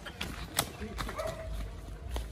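Running footsteps crunching over dry leaf litter and twigs, a string of quick uneven steps with one sharper click a little over half a second in.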